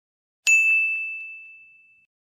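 A notification-bell 'ding' sound effect: one bright chime struck about half a second in, its single clear tone ringing on and fading away over about a second and a half.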